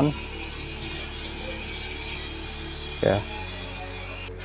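Steady high-pitched insect buzzing, an even chorus from the surrounding trees, over faint background music.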